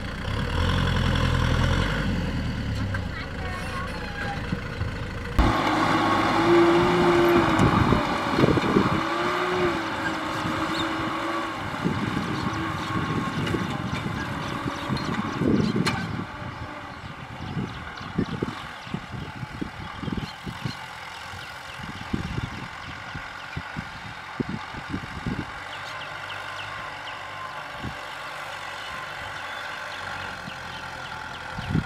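Kubota M6040SU tractor's diesel engine running under load as it pulls a disc plough through dry soil. The sound changes abruptly about five seconds in and is quieter over the second half.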